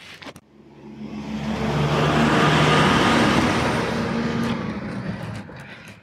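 A car passing by: its engine and tyre noise swells over about two seconds, is loudest about three seconds in, then fades away.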